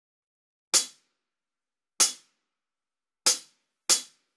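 Percussive count-in before a rock backing track: four sharp clicks, the first three about a second and a quarter apart and the last coming about twice as fast.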